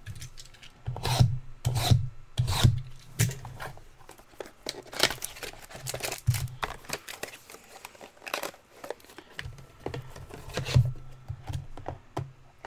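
Hands unwrapping and opening a sealed cardboard box of trading cards: plastic shrink wrap crinkling and tearing, cardboard rubbing and scraping, with dull knocks as the box is handled on the table. The handling comes in irregular bursts, loudest about a second in and again near the end.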